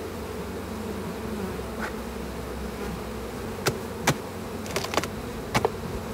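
Honey bees humming steadily around an opened hive. About halfway through come several sharp knocks, a handful within two seconds, as the wooden hive boxes are handled.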